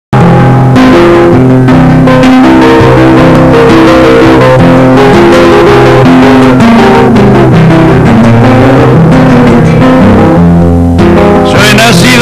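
Guitar playing an instrumental introduction of plucked notes and chords in a steady rhythm. A voice comes in over it just before the end.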